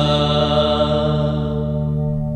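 Final held note of a Tagalog Christmas song: a sustained sung note over a held accompaniment chord, slowly fading.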